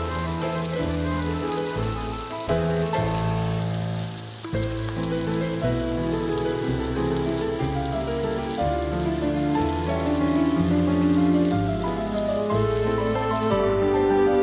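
Spiced raw banana slices sizzling steadily in oil in a nonstick wok, a hiss that cuts off suddenly near the end. Background music with held notes and a slow-changing low line plays throughout.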